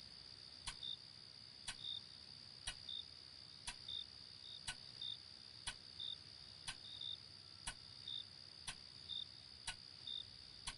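A clock ticking steadily once a second, each tick followed a moment later by a short high note, over a steady high-pitched chirring of crickets, as in a quiet night room.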